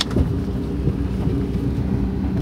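Steady low engine and road rumble heard from inside a moving vehicle.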